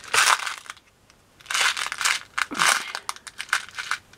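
Clear plastic bag of beads crinkling as it is handled, in several short bursts with a pause about a second in. Small clicks of beads near the end.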